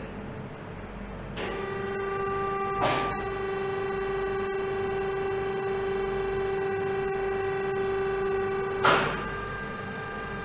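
Computerised Brinell hardness tester (KB3000) applying a 3000 kgf test load through a 10 mm steel ball: its loading mechanism starts with a steady hum about a second and a half in, gives a knock about three seconds in, and stops with a thump near the end.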